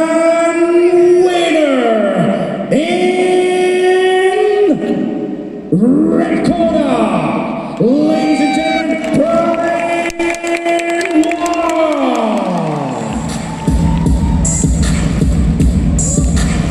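Arena loudspeakers after a fight stoppage: a series of long, loud pitched calls that each swoop up, hold and slide back down. A dance track with a heavy bass beat starts about thirteen seconds in.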